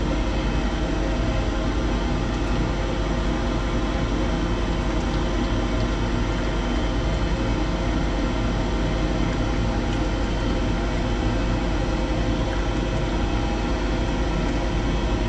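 Steady machine hum, a low buzz with several steady tones above it, unchanging throughout.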